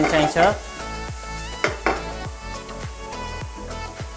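Chopped onion sizzling in hot oil in a nonstick frying pan, the pan shaken and stirred with a series of short knocks and scrapes. Background music with sustained notes runs underneath.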